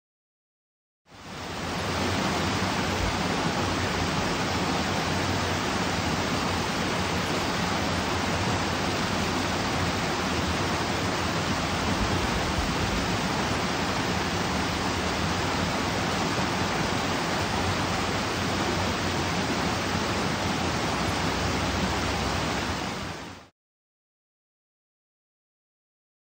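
River water pouring over a small weir into the pool below, a steady rushing that fades in about a second in and fades out just before the end.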